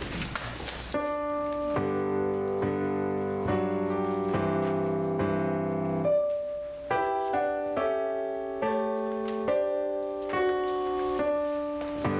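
Piano playing a slow, chordal introduction to a choir anthem, the chords changing about once a second. It starts about a second in, after room noise.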